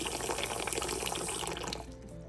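A thin stream of water pouring and splashing into a pot already part full of water, stopping shortly before the end.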